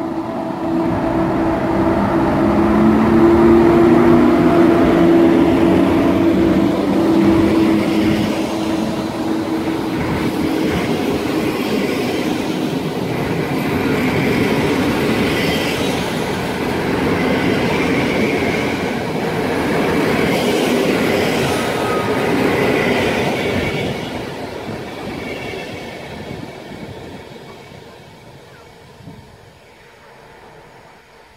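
PKP class EP07 electric locomotive and its train of intercity coaches passing. The locomotive's steady hum comes first, over the rumble and clatter of wheels on rail. The coaches' wheel rumble then carries on and fades away over the last several seconds.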